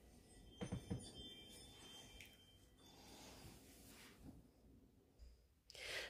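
Near silence: room tone, with a couple of faint, brief soft sounds a little under a second in.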